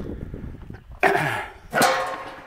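A man coughing twice, two sharp harsh coughs a little under a second apart.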